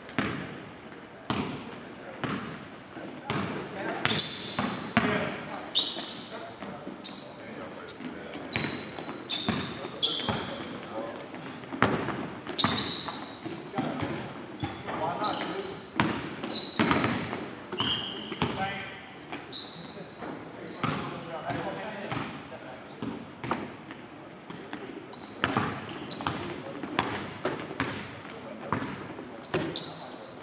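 A basketball bouncing again and again on a hardwood gym floor, with short high-pitched sneaker squeaks as players cut and stop, all echoing in a large hall.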